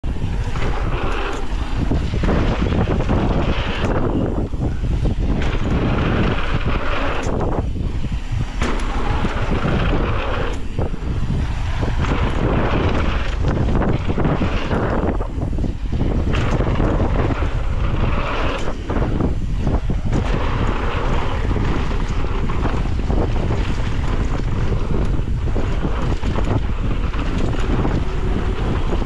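Wind rushing over the microphone of a camera on a mountain bike descending a dirt trail, mixed with tyre noise on loose dirt and frequent short knocks and rattles from the bike over bumps.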